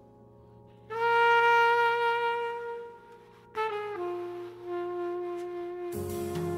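Jazz trumpet playing slow, long held notes over a quiet backing. A loud note enters about a second in and fades away, then a short phrase steps down to a lower note that is held.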